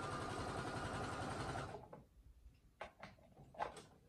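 Brother computerized sewing machine running fast and steadily as it stitches a seam through fabric, stopping about two seconds in; a few light clicks follow.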